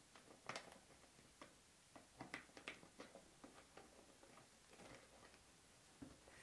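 Faint, scattered clicks and rubbing as a rubber balloon is stretched over the mouth of an empty plastic 2-liter bottle and the bottle is handled.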